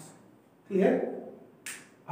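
A single sharp click from a whiteboard marker being handled, about a second and a half in, after one short spoken word.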